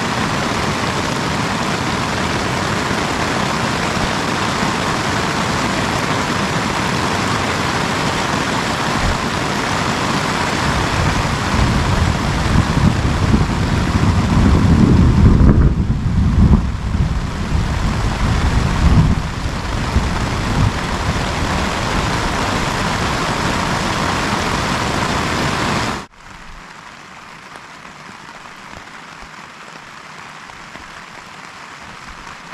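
Steady heavy rain and wind on a tent, with a deep rumbling swell that builds from about ten seconds in and dies away by about twenty. Later it cuts off suddenly to quieter, steady rain.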